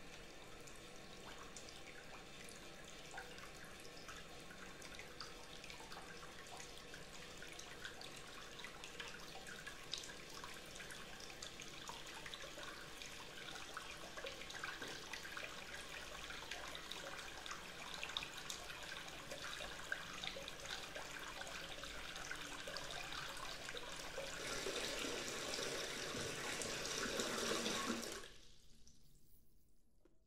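Water running from a tap into a bathtub, filling it. The flow grows gradually louder, runs stronger for the last few seconds, then is shut off near the end.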